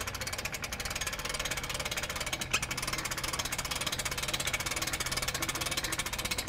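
Hoist hauling a climbing-wall frame up on Dyneema lines: a steady, rapid mechanical clatter over a low hum, with one louder knock about two and a half seconds in.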